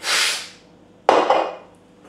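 A breathy exhale, then about a second in a sudden knock as a drink can is set down on a wooden table.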